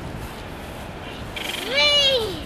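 A child's short, high-pitched cry or squeal near the end, rising and then falling in pitch, over low beach background.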